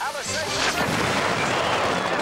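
A large load of fireworks going off: from about half a second in, a dense, continuous run of bangs and crackles.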